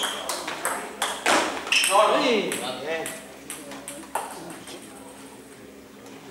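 Table tennis rally: the ball clicks sharply off the rackets and the table in a quick run through the first two seconds, with a few more clicks up to about four seconds in. A voice calls out with a falling pitch about two seconds in.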